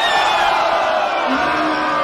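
A large crowd of spectators erupting in loud, sustained shouting and cheering, many voices at once, in reaction to a rapper's punchline. About halfway through, a long, low drawn-out shout joins in and holds.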